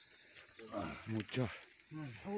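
A man's low voice speaking a few short words, about a second in, falling in pitch.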